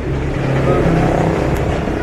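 A motor vehicle engine running, its low hum stepping up in pitch about a second in.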